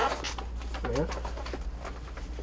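A man's short, slightly rising "hm" about a second in, over faint rustling of paper being handled.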